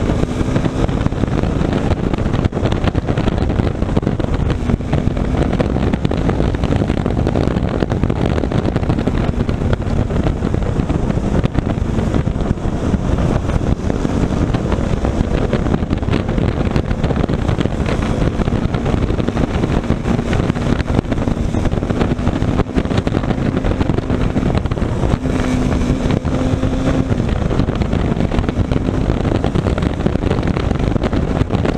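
Wind rushing over the microphone with a KTM motorcycle's single-cylinder engine running steadily at road speed underneath, its note wavering slightly.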